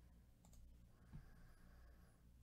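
Near silence with a faint low hum and two faint clicks, about half a second and just over a second in, from gloved fingers handling a foil trading card pack.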